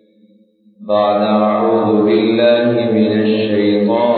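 A man's voice chanting Arabic in a slow, melodic recitation with long held notes. It resumes about a second in, after a short pause.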